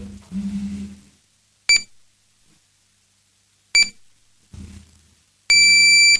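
Electronic beeps from a council chamber's voting system: two short high-pitched beeps about two seconds apart, then a longer beep near the end that signals the close of voting. A short low sound comes just at the start.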